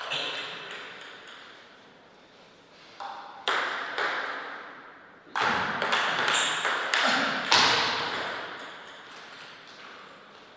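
Celluloid-type table tennis ball bouncing on the table a few times in quick succession, then a rally: sharp clicks of ball on rubber paddles and table from about three seconds in until about eight seconds, each hit ringing out with a reverberant tail.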